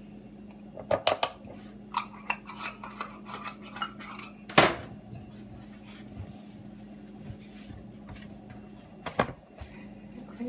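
Kitchen utensils and containers clinking and knocking on a countertop: a quick run of light clicks and clinks, the loudest knock about halfway through and another pair near the end.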